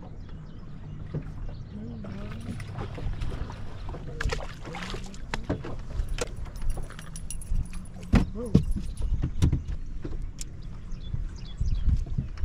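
Wind and choppy water against a bass boat, a steady low rumble, with sharp clicks and knocks as a small white bass and the tackle are handled and unhooked.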